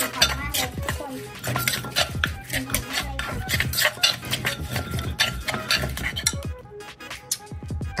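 Pestle knocking repeatedly in a mortar as the som tam dressing is pounded, with a spoon scraping and clinking against the bowl. The knocks thin out near the end. Background music plays under it.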